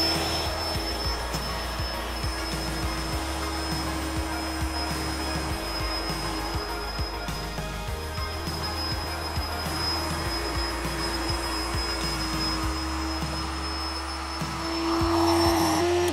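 The air mattress's built-in electric air pump runs steadily, inflating the mattress: an even motor hum with a thin high whine over it. It grows a little louder near the end.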